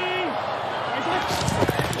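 Stadium crowd noise from the field microphones, with one short shouted call at the start and a cluster of sharp thuds about a second and a half in as the offensive and defensive linemen collide at the snap.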